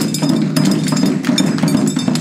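Chindon-ya percussion: the chindon drum rig's small taiko and brass kane gong struck with sticks in a quick, busy rhythm over a deep gorosu bass drum.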